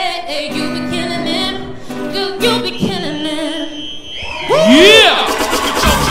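A woman singing live into a microphone over an acoustic guitar, with held notes, for about the first three seconds. Then the sound cuts to something louder: repeated sweeping sounds that rise and fall in pitch.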